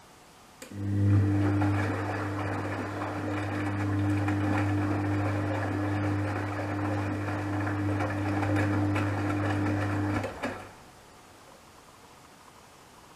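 Gorenje WA72145 front-loading washing machine turning its drum during a wash cycle: a click just under a second in, then the motor's steady hum with the laundry tumbling and swishing for about ten seconds, stopping shortly before the end.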